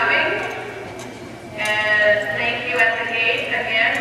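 People's voices calling out across the arena, the words unclear, loud at first, dipping about a second in and picking up again.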